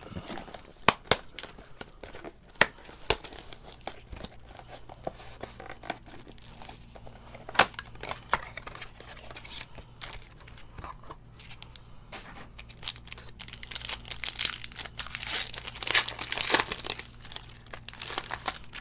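Foil trading-card pack and box wrapping crinkling and tearing by hand, with scattered crackles in the first half and a denser run of foil crinkling near the end as a pack is ripped open.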